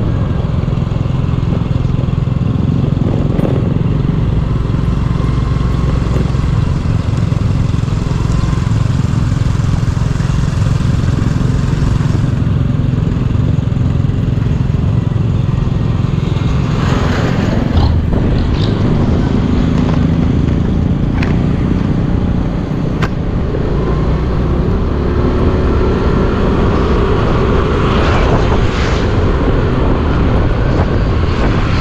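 Small motorcycle engine running steadily at road speed, heard from the rider's seat together with road noise. An oncoming jeepney passes a little past halfway, and other vehicles pass near the end.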